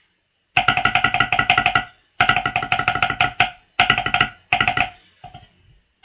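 Tenor drum solo played with sticks on a tabletop electronic drum pad kit: fast runs of pitched drum strokes in three or four bursts with short pauses between, starting about half a second in and trailing off into a few faint taps near the end.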